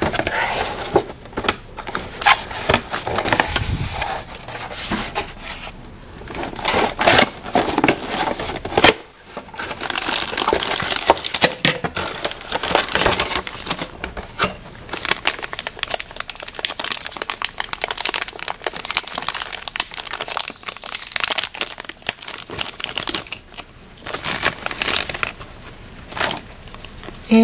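Clear plastic bags of toy parts crinkling and rustling as they are handled and pulled from a cardboard box, with irregular crackles and small knocks throughout and a brief lull about nine seconds in.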